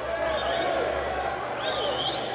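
Live basketball game sound: arena and court ambience, with a few high squeaks of sneakers on the hardwood floor.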